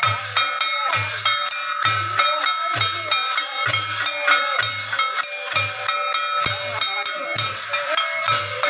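Santal Dansai dance music: hand-held brass cymbals clashing and ringing in a fast steady rhythm, over a low beat that comes about once a second.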